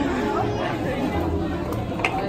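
Low background chatter of several people talking, with no distinct sound other than voices.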